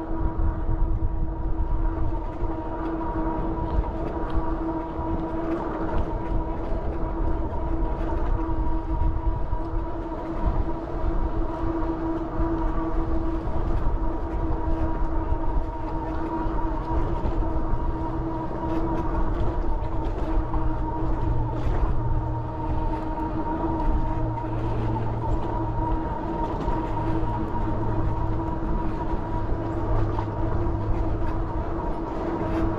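Electric bike's drive motor whining at one steady pitch while cruising at a constant speed. Heavy wind rumble on the microphone and road noise run underneath it.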